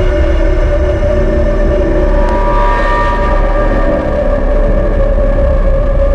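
Eerie droning background music: held steady tones over a deep, continuous low rumble.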